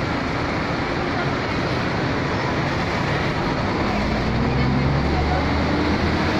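Road traffic noise from a busy street: a steady wash of passing cars and buses, with a heavy vehicle's engine rumble growing louder from about four seconds in.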